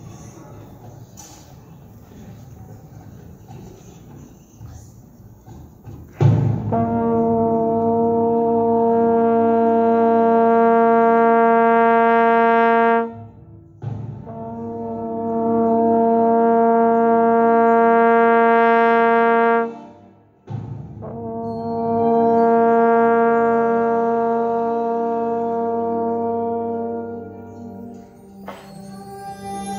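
Trombone playing three long held notes on the same pitch, each about six to seven seconds, with short breaks between them; the first starts about six seconds in.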